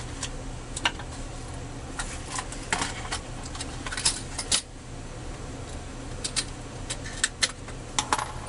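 Small metal hand tools clinking as they are sorted through by hand: about a dozen light, irregular clinks over a steady low hum.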